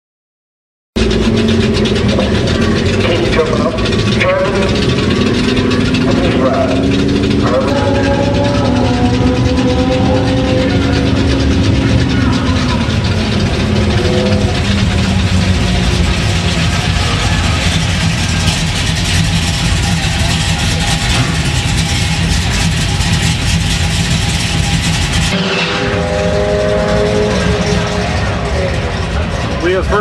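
A 1970 Chevelle's 496 cubic-inch big-block Chevy V8, with flat-tappet cam and full exhaust, running loud, its revs rising and falling as it drives. It starts about a second in, and the sound changes suddenly about 25 seconds in.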